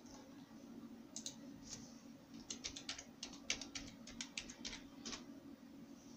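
Faint keystrokes on a computer keyboard: a run of about a dozen quick taps over a few seconds, a password being typed at a login screen. A faint steady hum runs underneath.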